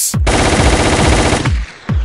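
Machine-gun sound effect in a DJ vinheta: a rapid rattle of shots lasting about a second that stops abruptly.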